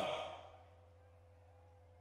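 A man's voice trailing off over about half a second at the end of a spoken sentence, then a pause of near silence with only a faint steady low hum.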